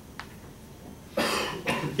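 A single cough, a short, loud burst a little over a second in.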